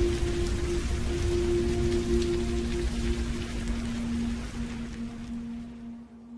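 Documentary soundtrack: held low drone notes over a dense crackling, rain-like noise and low rumble. It all fades away over the last couple of seconds.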